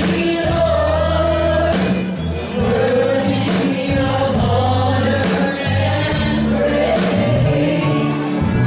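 Gospel worship song: women singing into microphones over amplified musical accompaniment with long held low notes.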